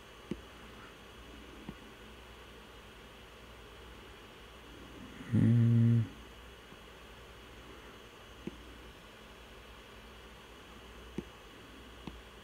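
A man humming a short, steady 'hmm' of under a second about halfway through. A few faint taps, as of a stylus on a tablet screen, come now and then.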